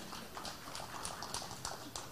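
Faint, irregular clicks and taps over low background hum, spaced unevenly across a couple of seconds.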